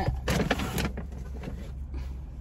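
Rustling, scraping and light knocks of items being handled and moved about inside a car, loudest in the first second, over a steady low hum.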